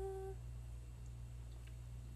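A woman humming a single held note that ends about a third of a second in, followed by a steady low background hum with a few faint ticks.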